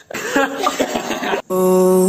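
A person's voice in short, cough-like bursts, cut off suddenly about one and a half seconds in by louder music with long held notes.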